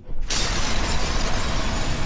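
Explosion sound effect: a loud, noisy blast that starts suddenly and then holds as a steady rumble.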